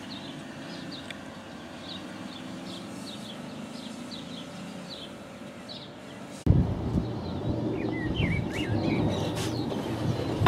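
Small birds chirping repeatedly in the background over a quiet outdoor hum. About six and a half seconds in, the sound jumps suddenly to a louder low rumbling noise, with a few more bird calls over it.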